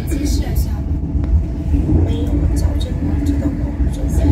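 Steady low rumble of a moving passenger train heard from inside the carriage, with indistinct voices of passengers talking underneath.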